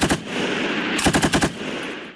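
Belt-fed machine gun firing from its bipod: a brief burst of a few rounds at the start, then a rapid burst of about seven rounds about a second in.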